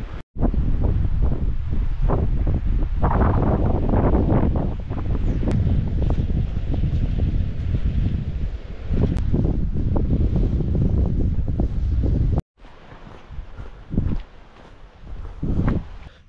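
Wind buffeting the microphone: a loud, gusty low rumble with no words. It cuts off suddenly about twelve seconds in, leaving a much quieter stretch with a few soft knocks.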